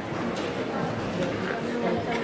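Indistinct murmur of many voices in a large echoing gym, with a few scattered knocks and clatter.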